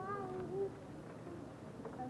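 A short, wavering, high-pitched vocal cry in the first half-second, then low background noise.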